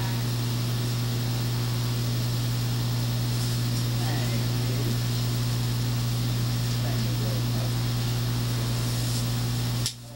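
Steady low electrical hum on the church sound system's audio feed, with faint voices of people talking in the background; the hum cuts off sharply just before the end.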